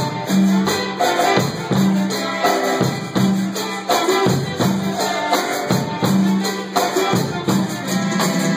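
Live band playing an instrumental stretch of a Latin dance tune: keyboard, electronic drum kit and bass guitar, with a steady beat of high hand percussion on top and a low phrase repeating about every second and a quarter.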